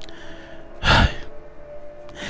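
A man's single sigh, breathed close into a headset microphone about a second in, over faint background music.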